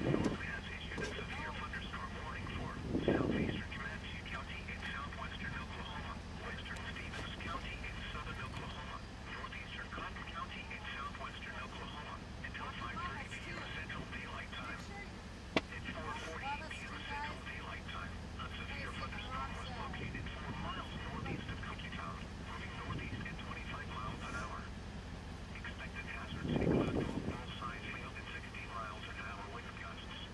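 Faint, tinny voices talking on and off, over a steady low rumble. A few brief low rushes come about three seconds in and again near the end, and there is a single sharp click about halfway through.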